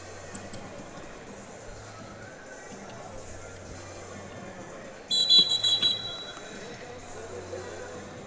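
Referee's whistle: one shrill blast, just under a second long with a slight warble, about five seconds in, stopping the action and separating the wrestlers. Behind it is the steady low hum of the arena.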